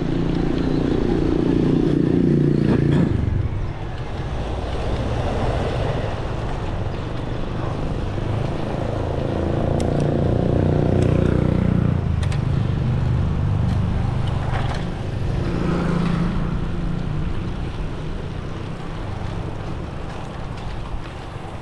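Wind buffeting an action camera's microphone over the rumble of a mountain bike's tyres rolling on asphalt, swelling louder near the start and again around the middle, with a few faint clicks.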